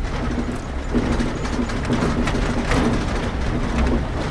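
Vehicle cabin noise while driving over a snowy surface: a steady low engine and road rumble, with a low hum that sets in about a second in.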